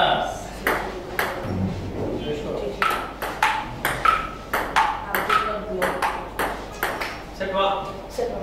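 Table tennis rally: the plastic ball clicking off rubber paddles and bouncing on the tabletop in quick alternation, about two to three sharp pings a second.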